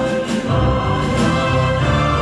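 A national anthem playing: orchestral music with a choir singing.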